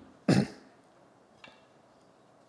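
A man clears his throat once, a short loud rasp just after the start, then a faint click about a second and a half in.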